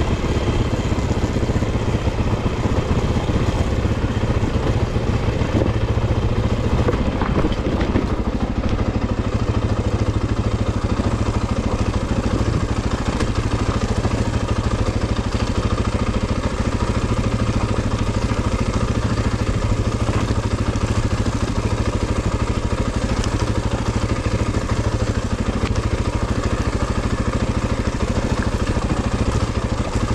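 Off-road vehicle engine running steadily at low, light-load revs on a downhill trail, with a slight change in its note about seven seconds in.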